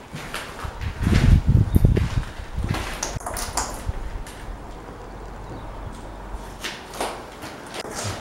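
Footsteps on a floor strewn with rubble and litter, with scattered clicks, scrapes and knocks, and a louder low rumble of handling noise about a second in.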